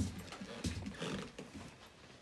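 A puppy moving about on a hard kitchen floor: soft knocks and scuffs, with a sharp knock at the very start and a short low noise around a second in.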